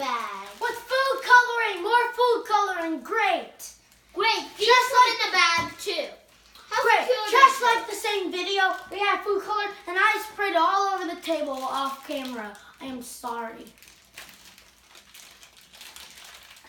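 A young girl's high-pitched voice, long and drawn out without clear words, with two short breaks and falling quiet near the end.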